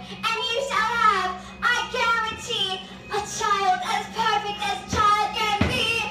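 A young performer singing a musical-theatre number in a child's voice, the line sliding and held, over a steady low accompaniment. Two short knocks come near the end.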